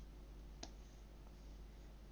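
Quiet room tone with a steady low hum, and a single computer mouse click a little over half a second in.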